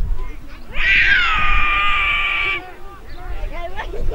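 A car horn sounds once, held for about two seconds, with a slight drop in pitch at the start before holding steady. Voices on the field and around the ground are heard around it.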